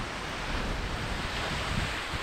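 Wind buffeting the microphone as a steady, uneven rumble, with the wash of sea surf behind it.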